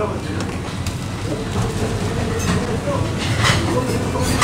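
Busy restaurant serving counter: a steady low rumble under murmured background voices, with a couple of short clinks of plates and serving utensils in the second half.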